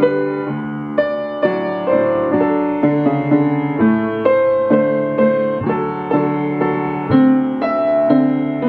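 Piano duet played four hands on one piano: a simple melody over chords, notes struck one after another at a steady, unhurried pace with no break.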